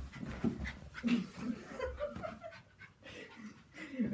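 Norfolk terrier making short, excited breathing and vocal sounds as it plays, in uneven bursts, loudest about a second in.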